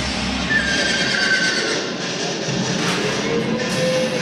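A horse whinnying over show music.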